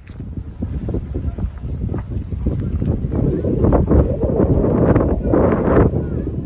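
Wind buffeting a phone's microphone: a loud, gusting rumble that starts abruptly and grows stronger toward the middle.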